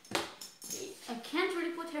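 Girls' voices talking, opened by a couple of sharp clicks in the first half second.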